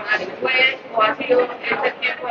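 Speech: a voice talking at a press conference table, words not picked up by the transcript.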